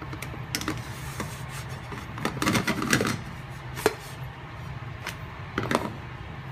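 A spatula clicking and scraping against a marble-coated frying pan as a pancake is flipped, with a cluster of clatter a couple of seconds in and single sharp taps later. A steady low hum runs underneath.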